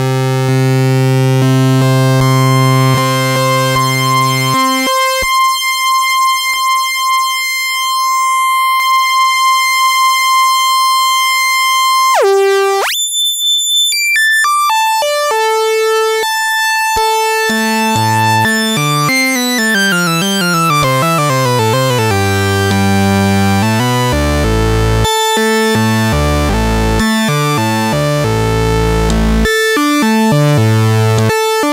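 Vintage Minimoog synthesizer with its three oscillators sounding together: a low held tone for about five seconds, then a high steady tone, then stepped jumps and sweeping glides in pitch as the oscillator range (footage) and tuning controls are changed while keys are held. This is a check of the oscillators across their footages, and they are working properly.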